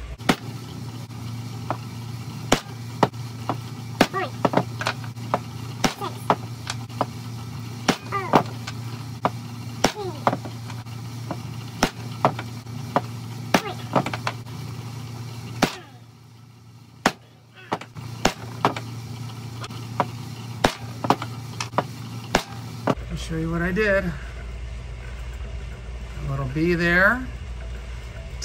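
A hammer striking hand-held steel letter and number punches, stamping characters into a cast fine-silver bar: a long series of sharp metallic blows, roughly one or two a second, with a brief pause partway through.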